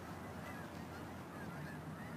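Geese honking faintly in many short, repeated calls over a steady low background hiss.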